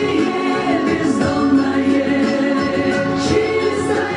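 A recorded song plays as accompaniment, with a choir singing over an instrumental backing.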